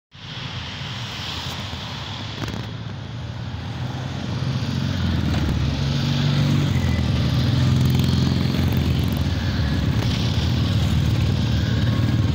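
Engines of a group of classic sidecar motorcycles running as they ride past, a low steady drone that grows louder from about four seconds in as the first outfits come close, then stays loud as more follow.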